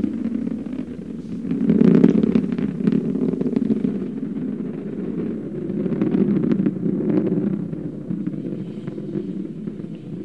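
Atlas V rocket's RD-180 main engine and five solid rocket boosters heard from a distance during ascent: a low, crackling rumble that swells about two seconds in and then runs on more evenly.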